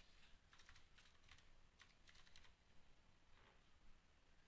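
Faint computer keyboard typing: quick runs of key clicks in two short bursts in the first half, then a single click near the end.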